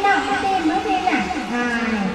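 Speech: voices talking, with no other sound standing out.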